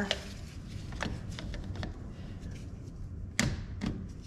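Light clicks and taps of hand tools working on the fuel filter housing of a mini excavator, with a sharper knock about three and a half seconds in.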